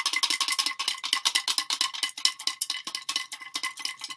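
Folded paper slips rattling against the sides of a lidded glass jar as it is shaken hard: a fast, continuous clatter of small clicks.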